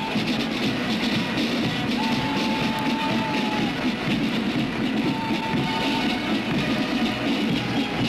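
Military band music playing a march, with a couple of long held notes.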